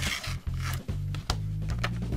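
Cardboard packaging rubbing and scraping as a phone flip case is slid out of its box, with a couple of light clicks, over background music with a steady beat.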